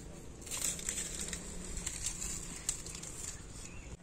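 Quiet outdoor background with faint rustling and a few light clicks.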